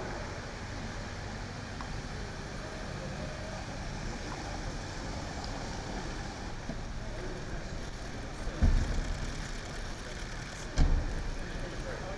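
Saloon car driving slowly in over paving stones, its engine running low and steady. Two heavy thumps about two seconds apart near the end: car doors being shut.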